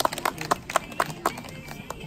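Scattered hand-clapping from a small audience, irregular claps that thin out after about a second.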